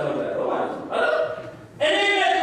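Only speech: a man preaching in Amharic into a handheld microphone, in short phrases with a brief pause before a louder phrase near the end.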